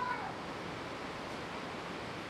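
Steady wash of ocean surf breaking. Near the start a short, high animal-like call with a few clear tones ends by falling in pitch.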